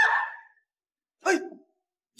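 A woman's shouted words trail off, then after a moment of dead silence comes one short vocal cry from the struggle, about a second and a quarter in.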